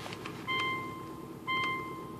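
An electronic chime beeping at about one beep a second, each a steady half-second tone, sounding twice: about half a second in and a second later. Under it, a car engine idles faintly after its cold start.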